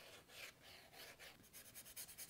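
Faint scratchy rubbing of soft pastel on drawing paper, in short strokes that come quicker in the second half, as the pink shading is worked in.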